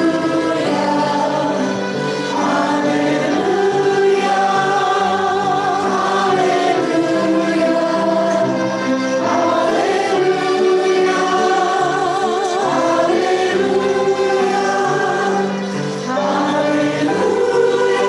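Choral singing: a group of voices singing slow, held chords with vibrato, changing chord every second or two.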